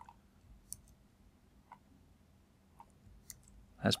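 A few faint, scattered clicks of a computer keyboard and mouse as a line of code is edited.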